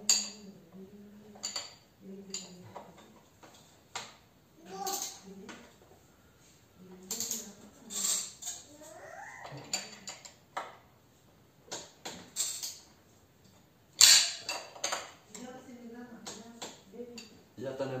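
Metal clicks and clinks of a wrench working the front axle nut of a KTM dirt bike as it is torqued to 35 Nm, in a scatter of separate strikes with the sharpest click about fourteen seconds in.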